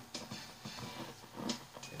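Faint scattered clicks and light crackle over a low hiss: a glitch in the sound system that the recording runs through.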